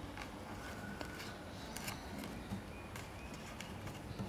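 Faint handling sounds of jute yarn being tied in a knot against a cardboard loom: quiet rustling with a few light ticks.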